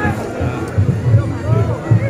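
Reog Ponorogo gamelan music with a quick, steady low drumbeat, heard under the shouting and chatter of a dense crowd.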